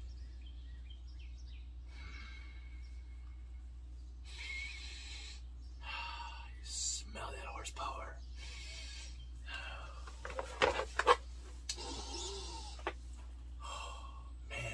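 Rustling and handling noise of a boxed electronic tuner, its cables and plastic packaging being moved about, in irregular bursts with a few sharp plastic clicks about ten to eleven seconds in. A steady low hum runs underneath.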